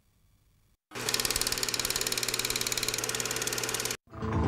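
After a brief silence, a harsh buzzing noise with a steady low hum starts about a second in, pulsing rapidly and evenly, then cuts off suddenly.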